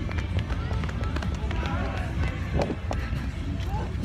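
Rumbling wind and handling noise on a phone microphone carried at a run, with footsteps and faint voices.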